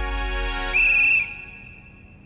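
Comic sound-effect sting: a held musical chord over a low boom, then a high whistle-like tone about three-quarters of a second in that fades away.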